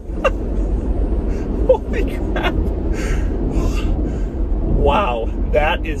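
Steady low road and tyre rumble inside the cabin of a Tesla Model Y electric SUV on the move, with no engine sound. A man laughs in short bursts over it, loudest near the end.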